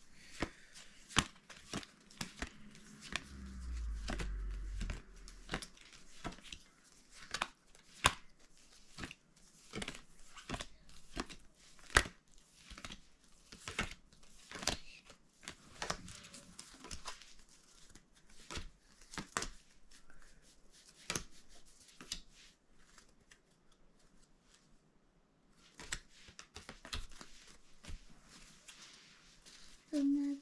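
Small picture cards from a matching game being counted out one by one, each card landing or flicking with a soft tap, in irregular clicks about a second apart. A brief low rumble of handling comes a few seconds in.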